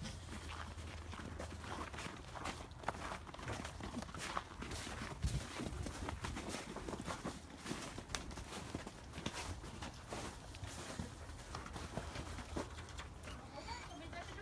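Footsteps crunching through snow, irregular steps throughout, over a low steady hum.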